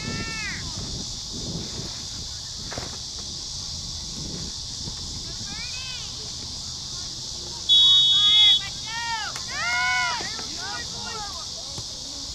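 Referee's whistle blown once, a single shrill blast of just under a second about eight seconds in, signalling play to start, with shouted calls from players and spectators before and after it.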